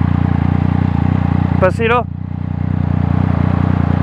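Yamaha MT-09 three-cylinder motorcycle engine ticking over at low speed with a steady low rumble from its loud exhaust. A short voice call cuts in just before the halfway point.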